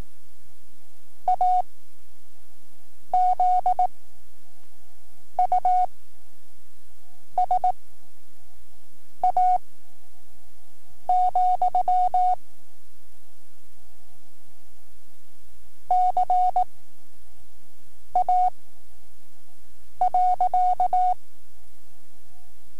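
Morse code from a cassette practice tape, a single steady tone keyed on and off. The dots and dashes form about nine characters spaced roughly two seconds apart, with a longer pause in the middle, paced for the five-word-per-minute novice code test. Steady tape hiss and hum run underneath.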